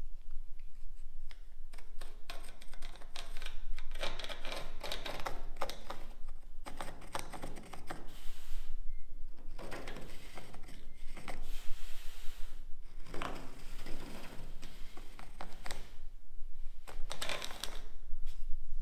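Carpenter's pencil scratching in quick strokes as it is drawn along the edge of a plywood door panel against a trailer's body, scribing a trim line, with a short pause about halfway through.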